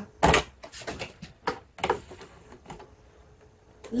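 A picture card is pulled out of a plastic talking card reader and a new card pushed into its slot. There is a sharp click about a quarter second in, then a string of lighter clicks and rubbing as the card is handled and fed in.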